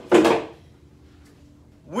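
A plywood panel being handled and set upright against other plywood, giving one short wooden knock-and-rattle right at the start.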